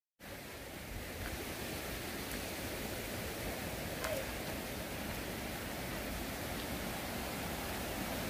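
Wind buffeting a handheld camera's microphone outdoors: a steady rushing noise with an uneven low rumble, broken by a few faint ticks.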